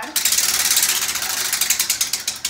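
A hand-spun prize wheel clicking rapidly as its pointer flaps past the pegs on the rim; the clicks begin to slow near the end as the wheel loses speed.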